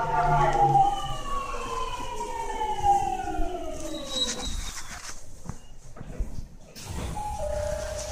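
Unrefurbished Mitsubishi GTO-VVVF inverter and traction motors of a Rinkai Line 70-000 series train whining in several tones that fall together in pitch as the train slows. The whine fades out about four and a half seconds in. Near the end, steady tones begin.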